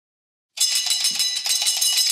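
A telephone bell ringing, a fast metallic rattling ring with high steady tones, starting about half a second in after silence.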